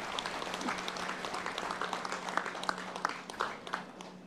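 Audience applause: many scattered hand claps that thin out and fade near the end.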